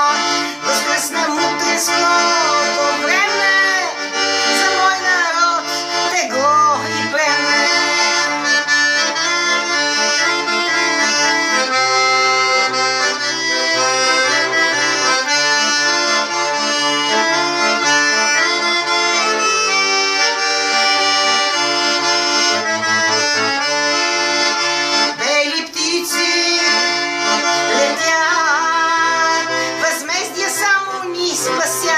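Piano accordion playing an instrumental passage of a folk song: a right-hand melody on sustained reedy notes over a left-hand bass and chord accompaniment in a steady rhythm.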